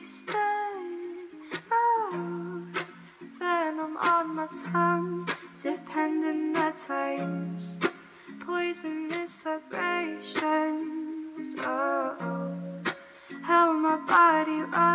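Ukulele strummed in chords, with a woman's voice singing a melody over it without clear words.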